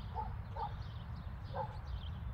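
A dog barking three short times over a steady low rumble.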